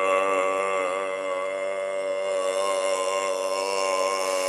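A man's voice holding one long droning note, steady in pitch with a slight waver, and no words.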